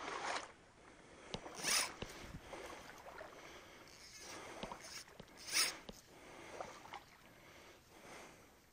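Quiet outdoor background with a few short, soft rustling swishes, the two clearest about two seconds and five and a half seconds in.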